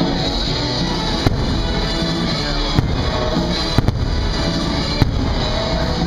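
Aerial fireworks bursting over loud show music: five sharp bangs at uneven spacing, two of them in quick succession just before the middle.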